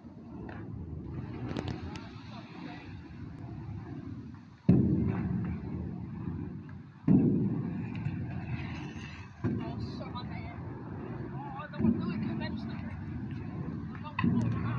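Stunt scooter's small hard wheels rolling on a concrete half pipe, a low rumble that surges sharply four times, about every two and a half seconds, and fades between, as the rider swings back and forth across the ramp.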